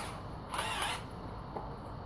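A cordless drill gives one short mechanical burst, about half a second long, starting about half a second in, with low handling noise the rest of the time.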